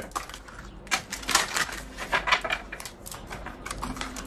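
Tarot cards being shuffled and handled: quick runs of clicking and flicking, the densest about a second in and again past two seconds.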